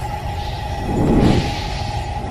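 Cinematic logo-intro sound effects: a deep, steady rumble under a held tone, with a whooshing swell about a second in.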